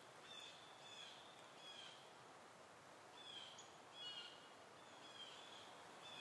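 Faint outdoor ambience: a bird giving short, high calls over and over, one every half second to a second, over a soft steady hiss.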